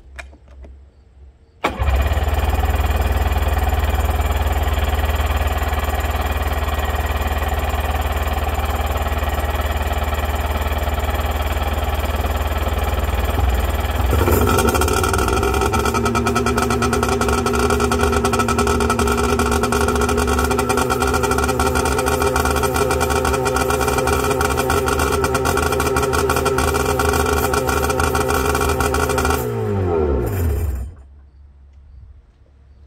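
A 1992 Sea-Doo GTS jet ski's two-stroke engine starting suddenly and running loud and steady out of the water, started to check for water in the engine. About halfway through its note changes and settles into an even run, and at the end it shuts off with the pitch falling away.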